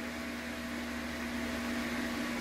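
A steady machine hum: one constant low tone over an even hiss that does not change, as from a fan or electrical equipment running.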